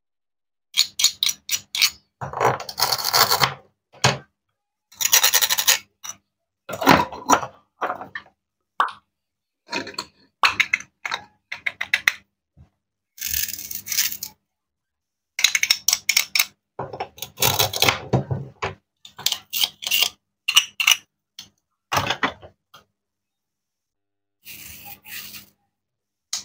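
Plastic toy fruit and vegetable halves being pulled apart and pressed back together: crackling rips of their hook-and-loop fasteners, with clicks and taps of plastic on a wooden cutting board. It comes in bursts of about a second, with dead silence between them.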